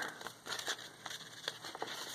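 Faint rustling and crinkling of aged paper sheets being handled and unfolded by hand, with a few light clicks scattered through.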